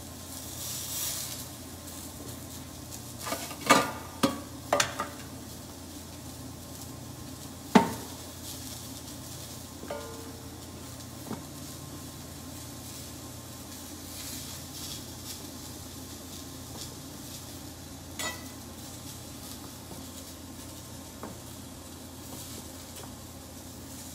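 Salmon sizzling in a frying pan, with a handful of sharp knocks and clinks of a knife and utensils on the counter as cold butter is cut into small cubes, the loudest knock about eight seconds in.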